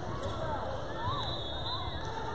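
Basketball being dribbled on a hardwood court, with the voices of players and spectators in the gym.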